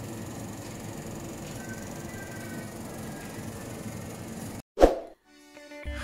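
Steady background noise of a supermarket aisle, which cuts out after about four and a half seconds. A single loud pop follows, then faint sustained musical tones.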